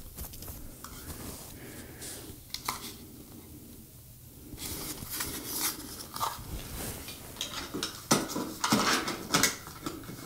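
Scattered light clicks and rattles of a ceiling fan's receiver box and its wires being handled and fitted up into the ceiling mounting bracket, with a quieter stretch about three to four seconds in.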